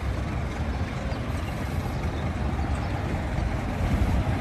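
Steady low rumble of city street traffic, a continuous noise with no distinct events.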